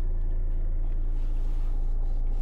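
A Hyundai Avante's engine idling steadily at about 750 rpm, heard as a low, even drone from inside the cabin.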